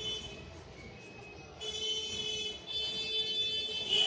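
Black marker pen squeaking on paper as it draws a curved outline: two long high-pitched squeals, the first starting about a second and a half in, the second running on to the end.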